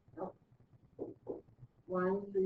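A person's voice making three short, separate utterances, with steady speech beginning right at the end.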